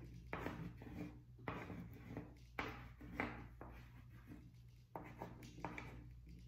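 Pencil scratching on paper in quick, irregular drawing strokes, faint. The strokes come in short bursts as small hearts are drawn rapidly, many over ones already drawn.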